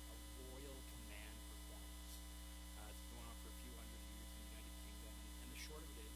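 Steady electrical mains hum, a low even drone that fills the recording, with faint, indistinct fragments of a man's voice beneath it.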